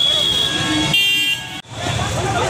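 Crowd voices and traffic noise on a busy street, with a high steady tone and then a short vehicle-horn toot about a second in. The sound cuts out briefly near the end.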